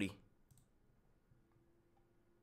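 Near silence after a man's voice trails off, with one faint computer mouse click about half a second in and a faint steady hum later on.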